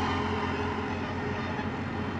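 A motor vehicle engine running with a steady hum, easing off slightly.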